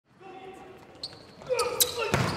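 Indoor volleyball rally: the ball is struck with sharp smacks, once about a second in and again near the end, echoing in a sports hall, with players' shouts rising in the second half.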